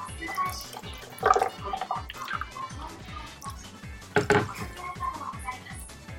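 Background music with a steady beat, over which curry and rice are being eaten with a spoon. Two short louder eating sounds stand out, about one second and about four seconds in.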